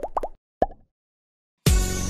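Cartoon 'plop' sound effects from an animated logo bumper: three quick rising bloops, then one louder bloop about half a second in. A gap of dead silence follows before other sound cuts back in abruptly near the end.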